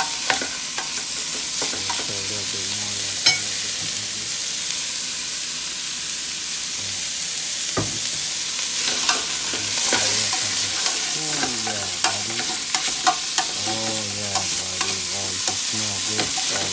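Diced smoked meat and onions sizzling in oil in a stainless steel pot, with a steady hiss throughout. A spatula scrapes and clicks against the pot as the food is stirred.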